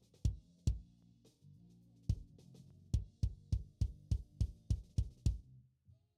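Playback of a live-recorded kick drum track EQ'd on an SSL E-series channel strip. Punchy kick hits, scattered at first, then a quick even run of about three a second, with stage bleed from the rest of the kit and the bass ringing between them. Playback stops near the end.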